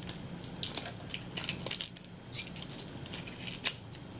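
Crinkling and crackling of the plastic wrapping on an L.O.L. Surprise toy ball as it is peeled open by hand: a run of irregular sharp crackles.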